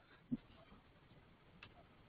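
Faint computer keyboard keystrokes: a couple of isolated clicks, one soft and low about a third of a second in and a sharper one past the middle, over quiet room tone.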